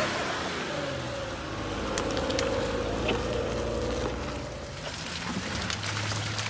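A Jeep four-wheel drive's engine running at low revs as it crawls along a muddy dirt track, a steady note with a few faint clicks over it.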